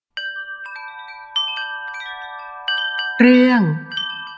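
Chimes ringing: several clear metallic notes struck one after another, each left to ring on. About three seconds in, a voice begins speaking over them and is the loudest sound.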